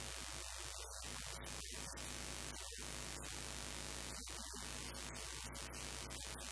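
Steady static hiss with a low electrical hum under it; no speech comes through.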